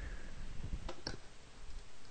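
A quiet pause with low hum and hiss, and two faint clicks close together about a second in.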